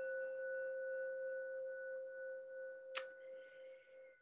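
A metal singing bowl rings after a single mallet strike, holding a steady low tone with a fainter higher overtone and slowly fading. A short sharp click sounds about three seconds in.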